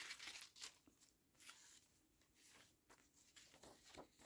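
Faint rustle of paper pages being turned by hand: a few soft brushes and slides of paper, the loudest near the start, otherwise near silence.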